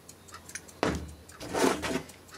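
Handling noise from a dismantled loudspeaker's parts on a workbench: a sudden knock a little under a second in, then rubbing and scraping as the magnet and coil pieces are moved about.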